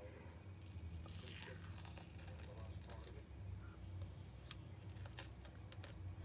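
Faint ticks and rustles of a peel-off gel face mask being picked at and peeled from the skin by fingertips, with a few small clicks in the second half, over a low steady hum.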